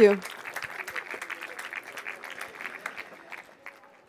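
Audience applauding, the clapping dense at first and then thinning out and fading away near the end.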